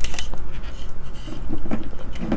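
Small clicks and handling noises of a test lead with an alligator clip being picked up and clipped onto the circuit board, with one sharp click at the start, over a steady low hum.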